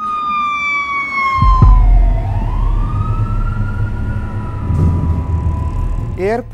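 Emergency vehicle siren wailing in the street, its pitch falling, then swooping up and down again, over a low engine and traffic rumble. There is a sharp low bump about a second and a half in.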